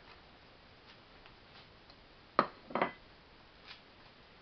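Two short knocks about half a second apart, a little past halfway: the wooden spoon knocking against the stainless steel pot as bacon goes in.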